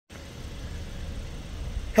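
Outdoor background noise: a steady low rumble with a faint hiss.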